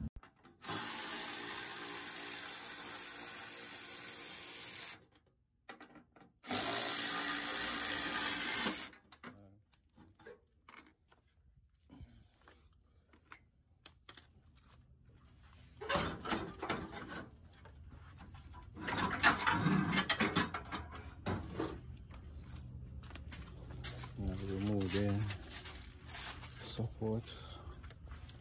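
A handheld power tool running in two steady bursts, the first about four seconds long and the second, louder one about two and a half seconds, while the van's front-end support bolts are being taken off; light clicks and handling noises follow.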